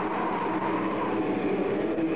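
Raw black metal from a lo-fi 1994 cassette demo: a dense, steady wall of distorted sound with held notes, dull and lacking treble.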